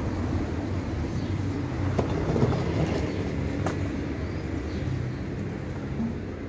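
A tram running past on its rails: a steady low rumble and motor hum that swells about two to three seconds in, with a few sharp clicks over it. Faint bird chirps sit above.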